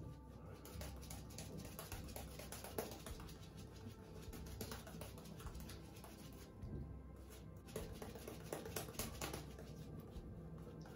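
Omega 40099 boar-bristle shaving brush working soap lather over the face and neck: faint, continuous brushing made of many quick, soft strokes.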